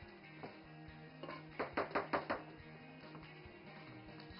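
Quiet background guitar music. About one and a half seconds in, five quick knocks in under a second, from the metal cake pan as batter is levelled in it.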